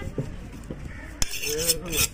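A heavy curved fish knife cutting a seer fish (vanjiram) into steaks on a wooden block: one sharp knock as the blade goes through and strikes the block, a little over a second in, followed by a brief scraping hiss.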